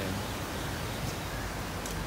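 Steady, even hiss of outdoor background noise, with a couple of faint ticks near the end.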